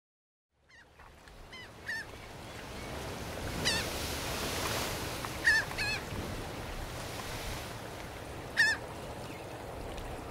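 Gulls calling, short cries every second or few seconds, the loudest about four, five and a half and eight and a half seconds in, over a steady wash of water that fades in at the start.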